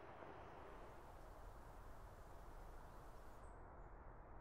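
Near silence: a faint, steady rumble of distant motorway traffic. About three and a half seconds in, the background hiss changes, and a few faint, short high chirps follow.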